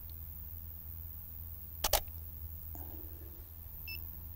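Canon DSLR shutter firing once about two seconds in: a quick double click of the mirror and shutter, over a faint low hum.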